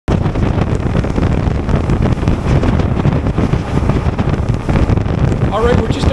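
Wind rushing over the microphone, with the motorboat's engine and water noise underneath, as the boat cruises at speed. A man's voice starts near the end.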